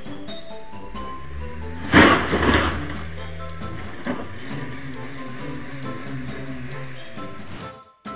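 Background music, with a loud crash about two seconds in: a car hitting a parked car.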